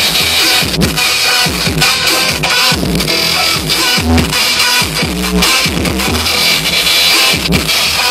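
DJ mix played on vinyl turntables, a loud electronic track with a beat, cut through with record scratching: the record pushed back and forth by hand, giving short pitch sweeps up and down several times a second.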